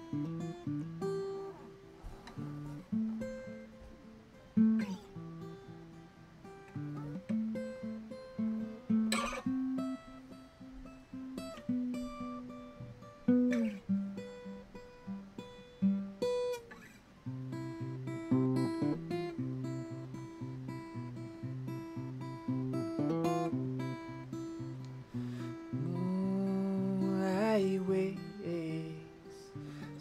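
Solo acoustic guitar playing an instrumental intro: picked chords and single notes in a steady run, with a few notes sliding in pitch.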